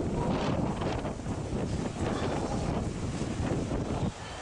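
Wind buffeting the camera microphone: a steady, dense rumble that drops away suddenly at the very end.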